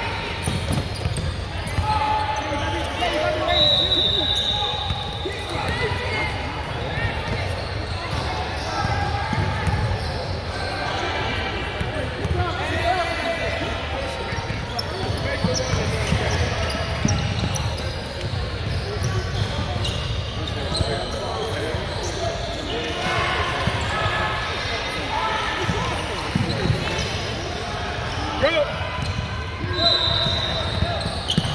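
A basketball bouncing on a hardwood gym floor, with overlapping voices of players and spectators echoing around a large gym.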